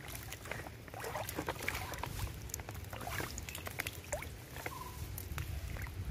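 Shallow stream water sloshing and lightly splashing as hands work a fishing net through it, with many small scattered splashes and clicks over a low rumble.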